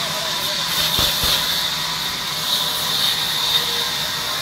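Large sawmill band saw running steadily with a high, hissing whine, with two dull knocks a little after a second in.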